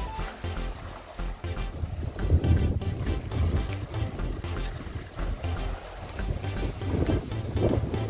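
Wind buffeting the microphone: an uneven low rumble that comes in gusts, strongest about two seconds in and again near the end.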